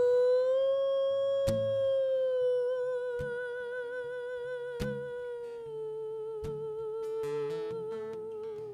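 A woman's singing voice holding one long note, rising slightly about a second in and taking on vibrato about three seconds in, over an acoustic guitar strummed sparsely, one strum every second and a half or so.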